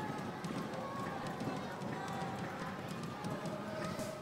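Stadium ambience during open play: a steady murmur of crowd and distant voices, with a few faint knocks.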